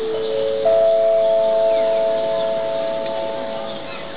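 Public-address chime: four notes struck one after another, each higher than the last, ringing on together and fading near the end. It is the signal that opens a PA announcement.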